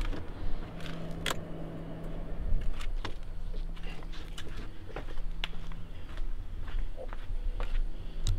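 Footsteps on a concrete driveway, scattered irregular steps and scuffs, over a steady low hum.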